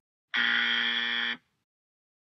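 Game-show style buzzer sound effect: one flat, steady buzz lasting about a second, marking a wrong answer.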